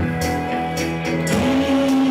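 Live pop band playing, guitar to the fore, with regular cymbal strokes keeping the beat; a long held note comes in about two-thirds of the way through.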